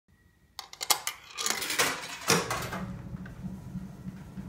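A coin dropped into a Seeburg KT Special coin piano, clicking and rattling through the coin mechanism, then a clunk a little over two seconds in as the piano's electric motor and pump start running with a steady low hum.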